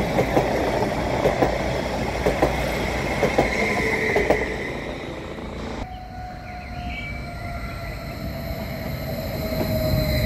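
A nordbahn electric multiple unit runs past close by, its wheels clicking in pairs over a rail joint about once a second. After about six seconds the sound cuts to another nordbahn unit approaching, quieter, with a steady whine that grows louder as it runs in.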